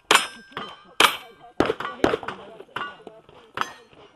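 Rifle shots fired at steel buffalo-silhouette targets, each crack followed by the ring of the struck steel, about one a second with a couple in quicker succession.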